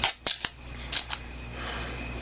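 Sharp clicks and snaps of a liquid foundation's packaging being opened by hand: a quick run of them at the start and two more about a second in.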